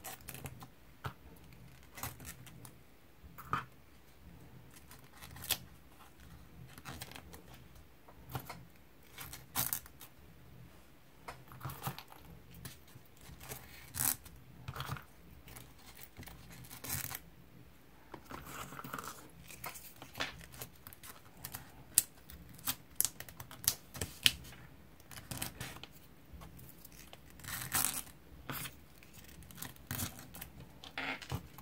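Short susukkang craft-stick pieces being picked up and pressed one by one onto taped paper: scattered light taps, clicks and paper rustles at irregular intervals.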